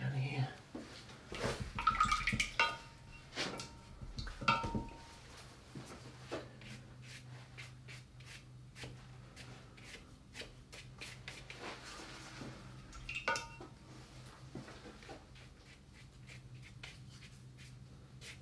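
Brush strokes and handling on wet watercolour paper: scattered soft clicks and scrapes, with a few short ringing clinks in the first five seconds and once more past the middle, over a steady low hum.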